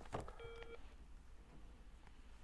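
A click, then a faint short electronic beep of several steady tones sounding together, under half a second long, like a telephone tone, followed by low room hiss.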